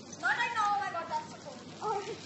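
A child's high-pitched squeal, about a second long, that rises and then falls, followed by a short second cry near the end.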